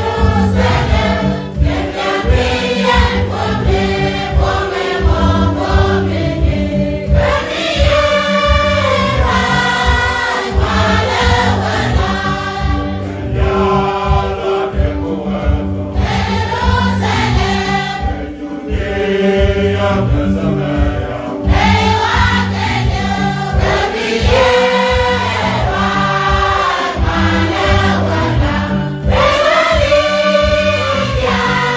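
Mixed choir of women's and men's voices singing a gospel hymn in Nuer, in sustained chords without a break.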